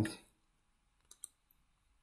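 Two faint, quick computer mouse clicks about a second in, with near silence around them.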